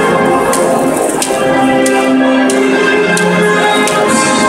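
Orchestral national anthem played over a large stadium's sound system: held chords with bright percussion strikes about every two-thirds of a second.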